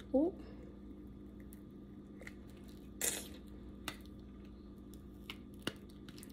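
Silicone mold being flexed and peeled away from a cured resin ashtray: faint handling noise with a few small clicks and one short rustling burst about three seconds in.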